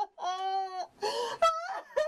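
A woman wailing and sobbing: one long held wail, a sharp gasping breath, then a short rising cry.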